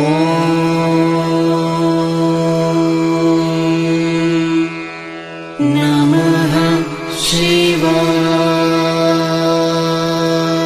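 Devotional mantra chanting sung over music: long, steady held notes. About five seconds in there is a short break, then the chant resumes with a brief wavering before holding steady again.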